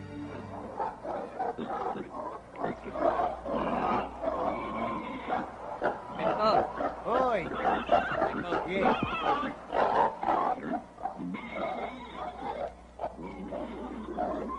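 A pen full of domestic pigs squealing and grunting together, many overlapping cries bending up and down in pitch without a break.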